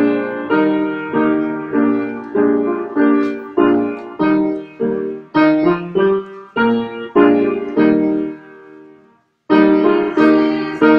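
Piano playing a hymn tune in steady block chords, about one chord every 0.6 seconds, each fading after it is struck. Near the end the phrase closes on a longer held chord, breaks off briefly, and the playing starts again.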